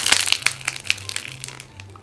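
Dried white clay crust cracking and crumbling as a ball of soft clay is broken and stretched apart by hand: one sharp crack at the start, then many small crackles that thin out.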